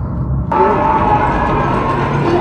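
Film soundtrack playing through cinema speakers, recorded in the auditorium: a low percussive rumble, then about half a second in the music cuts in suddenly, fuller and brighter, and carries on loud.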